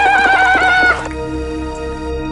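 A high whinny with a fast wavering, slowly falling pitch, cutting off about a second in, over background music.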